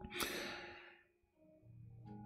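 A man's audible breath, a short sigh lasting about a second and fading out, followed by near silence with a faint steady hum.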